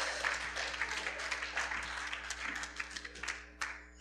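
Scattered clapping from a small church congregation, light and dying away near the end.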